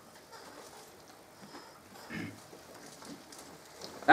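Faint, light rustling of Bible pages being turned to find a passage, with one short soft sound about two seconds in.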